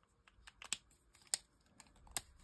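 A few faint, sharp clicks and taps of alcohol felt-tip markers being handled on a desk: a marker picked up, its cap and tip clicking and dabbing on card, two of the clicks louder than the rest.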